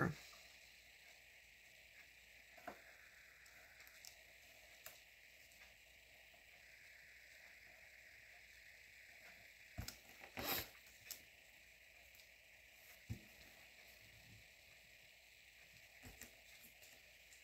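Near silence with a few faint, brief handling sounds of skinny washi tape being laid and pressed onto a paper planner page, the most noticeable cluster about ten seconds in.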